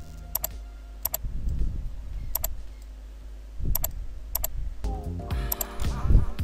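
Computer mouse clicking: about five sharp double clicks at uneven intervals, opening folders in a file browser, over a low steady hum.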